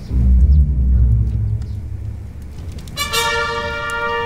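Dramatic background music: a deep, loud drum rumble that fades, then a sustained chord of several held tones entering about three seconds in.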